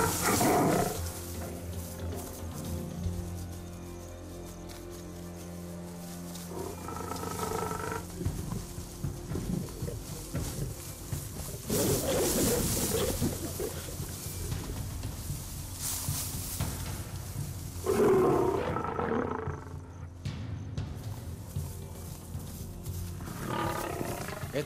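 Lions snarling and roaring in a fight, a lioness turning on a male in defence of her cubs, in several loud outbursts. Underneath runs background music with long held low notes.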